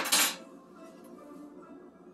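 A brief clatter at the very start as a plastic container knocks against a stainless steel mixing bowl, followed by faint background music.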